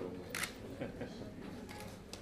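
Camera shutters clicking several times, the loudest click about half a second in, over faint murmuring voices.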